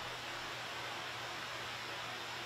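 Steady even hiss with a constant low hum underneath, typical of a greenhouse circulation fan running.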